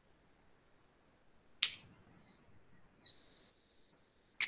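A quiet room broken by one sharp click about one and a half seconds in, picked up on a video-call microphone. A faint, short high-pitched tone follows about three seconds in.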